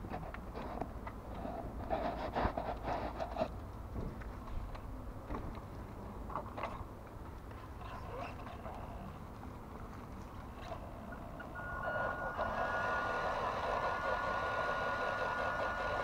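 Small RC rock crawler's electric motor and plastic gearbox whining steadily as it drives, coming in about twelve seconds in with a single high steady tone over it. Before that, only faint background with a few light clicks.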